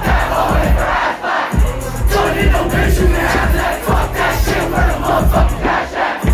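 Concert crowd shouting along to a live hip-hop track with a heavy, pulsing bass beat over a PA. The bass cuts out for about half a second about a second in, then comes back.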